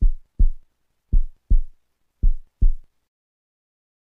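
Heartbeat sound: three lub-dub pairs of low thumps, the pairs a little over a second apart, stopping about three seconds in.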